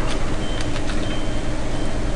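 Steady background noise with a low hum, a faint high tone that comes and goes three times, and a few faint clicks.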